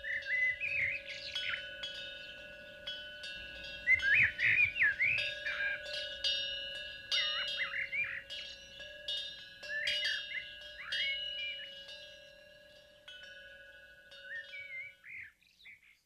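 Birds chirping and twittering over the long ringing of a metal chime, which is struck again a couple of times; all of it stops just before the end.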